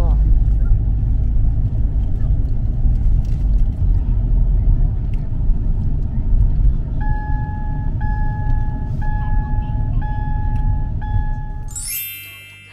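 Road noise of a moving car heard from inside the cabin, a steady low rumble. From about seven seconds in, an electronic beep repeats about once a second, five times.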